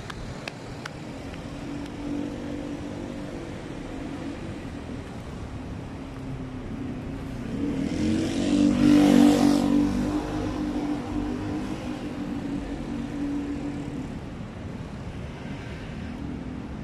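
Street traffic with engines running. A motorcycle passes close about eight to nine seconds in, rising to the loudest point and then fading.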